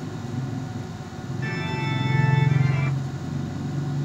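A film's soundtrack music playing through a TV's speakers: a held chord of several steady tones comes in about one and a half seconds in over a low swell, then fades away near the three-second mark.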